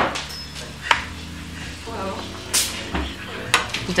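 Cutlery and fingers clicking against metal plates and thali trays during a meal, a few sharp clinks about a second apart, over faint low voices.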